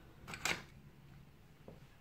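Two short clicks in quick succession about half a second in, over a faint low steady hum.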